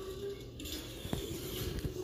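Faint handling noises: a few soft clicks and knocks from a hand and objects on a desk over a low room hum.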